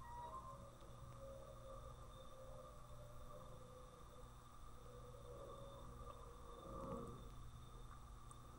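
Near silence: faint room tone with a low steady hum.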